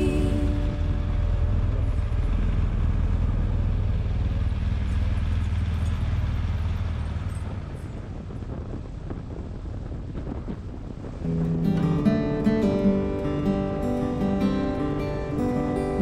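Low riding rumble of a BMW R1200GS Adventure motorcycle, engine and wind, heard from its on-bike camera and fading out over the first eight seconds. About eleven seconds in, strummed acoustic guitar music begins.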